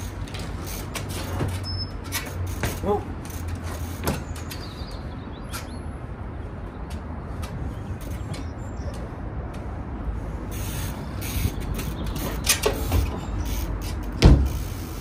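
Trials bike ridden over stacked wooden pallets: scattered knocks and clicks of tyres landing and hopping on the wood, with a few louder knocks near the end, over a steady low rumble.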